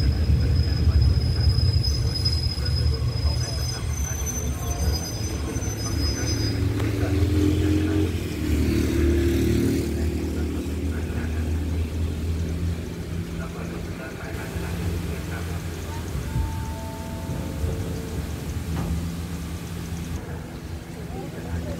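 Low steady rumble of a standing train's diesel engine idling, heard through an open carriage window, with a thin high whine for the first few seconds and people's voices in the carriage.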